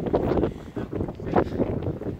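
Wind buffeting the microphone in uneven gusts, a rough low rumble that rises and falls.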